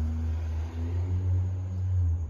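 A steady low rumble with no break.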